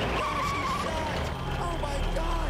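Pickup truck engine running in a steady low rumble, under panicked young men's shouting.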